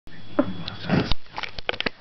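A person sniffing close to the microphone, followed by a quick run of sharp clicks and knocks in the second half.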